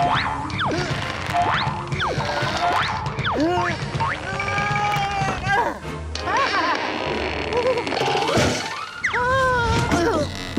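Cartoon soundtrack of music with comic sound effects: a quick run of springy boings and whistle-like glides sweeping up and down in pitch.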